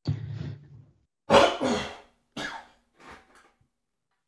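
A man coughing and clearing his throat in four short bursts, the loudest about a second and a half in.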